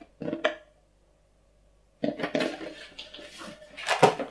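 Handling noise of microphone-kit parts being lifted out of a foam-lined cardboard box, starting about two seconds in: rustling and light clattering of plastic and metal pieces, with a sharper knock just before the end.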